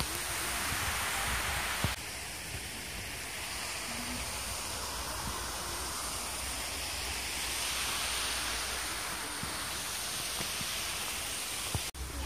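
Park fountain's water jets splashing steadily into its pool, an even rushing of water, with a short click about two seconds in.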